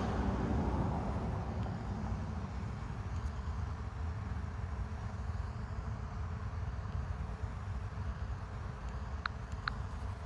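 Steady low rumble of outdoor background noise, with two brief faint high ticks near the end.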